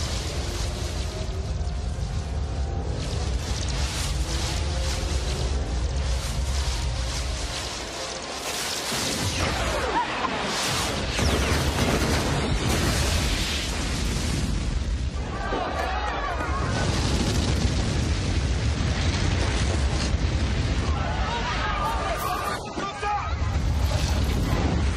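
Film sound effects of an energy beam blasting a city and a huge explosion. A deep rumbling builds for the first several seconds and dips about eight seconds in. Then a big blast comes and turns into a long roar of fire and flying debris, with music under it.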